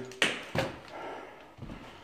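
Two sharp knocks in a bare, echoing room, the first the loudest, followed by fainter scuffs and a low bump near the end.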